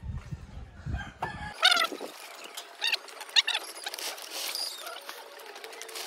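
A rooster crowing, first about a second and a half in and again a couple of seconds later, after a low rumble that cuts off suddenly.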